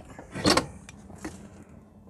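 Metal firebox door of a multi-fuel boiler burning corn being unlatched and swung open, with a single sharp clunk about half a second in. The running boiler hums faintly and steadily underneath.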